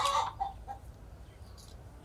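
A chicken clucking: a few short clucks within the first second.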